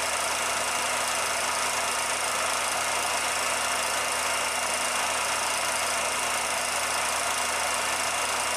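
A 16mm film projector running steadily: an even mechanical whirr with a constant low hum and no changes.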